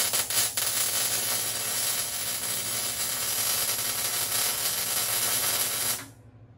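Arc welder laying plug welds through holes drilled in the sheet steel of a car's front radiator core support. It crackles in the first half second, then settles into a steady hiss that cuts off abruptly at the end.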